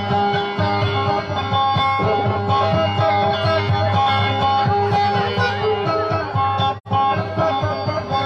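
Acoustic guitar being played in a song, amplified and loud, with a brief sudden dropout in the sound about seven seconds in.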